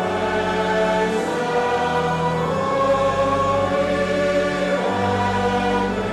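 Church congregation singing a metrical psalm in slow, sustained notes, accompanied by organ.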